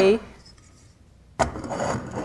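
A metal calcium carbide lamp is set down on the benchtop about a second and a half in: a sudden knock, then a short scraping rub as it settles.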